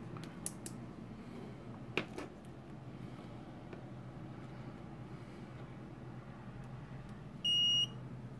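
MKS TFT32 3D-printer display board's buzzer giving one short, high beep near the end as the board is powered up and starts booting. Before it come a few faint clicks and a sharper click about two seconds in as the board is handled.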